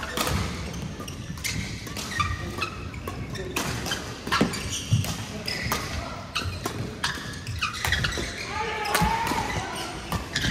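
Badminton rally: many sharp, irregular strikes of rackets on the shuttlecock, mixed with thuds of footfalls on the court, in a large hall.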